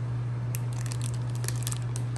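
Clear plastic bag of water crinkling faintly with a few light crackles as it is handled, over a steady low hum.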